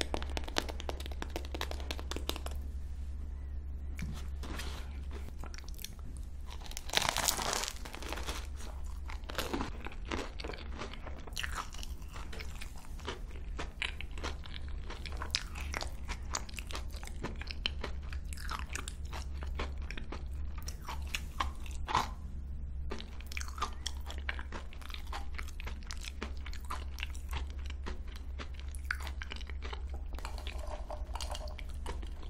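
Close-miked biting and chewing of a crunchy crocanche choux pastry with a crisp sugared crust: irregular crisp crunches throughout, the loudest about seven seconds in, over a steady low hum.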